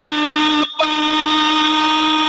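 A male voice chanting an Urdu noha (mourning lament). A few short sung syllables are followed, from about a second in, by one long note held at a steady pitch.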